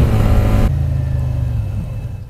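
Motorcycle engine running steadily with a hiss of road noise over it. The sound drops abruptly about two-thirds of a second in to a quieter low engine drone, which fades toward the end.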